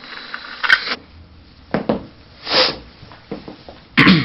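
A person sniffing hard through a thin straw held to the nose, snorting powder: short sharp sniffs, then a longer rushing inhale about two and a half seconds in.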